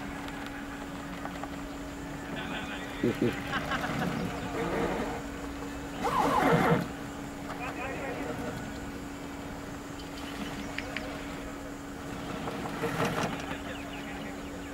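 Indistinct shouts and calls from cricket players on the field, a few short ones with the loudest about six seconds in, over a steady low hum.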